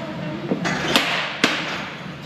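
Three sharp clanks of gym equipment, about half a second apart, over steady gym background noise.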